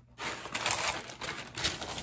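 Packaging being handled: a crinkly rustle that starts a moment in and runs about two seconds.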